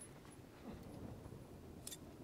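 Near silence: faint background ambience, with a faint short sound a little under a second in and a brief click near the end.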